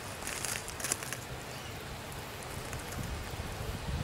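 Wind rumbling on the microphone with light rustling and a few faint crackles in the first second, the low rumble swelling near the end.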